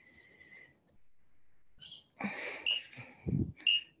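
A woman breathing hard during knee push-ups: faint at first, then loud, breathy exhalations through the second half.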